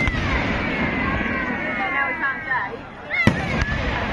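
Fireworks display: aerial shells bursting, with two sharp bangs about three seconds in, a third of a second apart, over a steady wash of crackle and rumble from the bursts.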